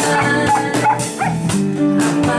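Live band music from guitars and a drum kit, a slow song between sung lines, with several short sliding high calls over it.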